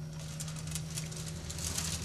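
Stainless-steel pump unit being turned by hand on a tabletop: an irregular rubbing and scraping of its base and frame, over a steady low hum.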